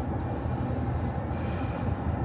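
Steady low rumble of a vehicle's engine and road noise heard from inside the cabin while driving.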